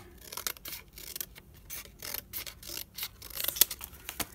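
Scissors snipping through thin cardboard: a run of short, irregular snips as a strip is trimmed off the top of a slotted divider.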